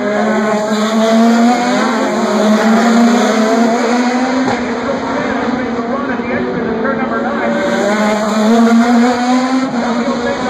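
Race car engines running on the circuit out of sight, a steady drone whose pitch rises slowly twice as the cars accelerate, once over the first few seconds and again near the end. People can be heard talking in the background.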